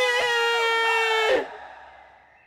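A man's long, high-pitched wail of despair, held on one pitch and cut off about a second and a half in.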